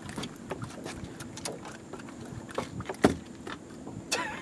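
Light clicks and knocks of a spinning rod, reel and line being handled on a boat as a small fish is lifted aboard, with one sharper knock about three seconds in, over a faint steady hum.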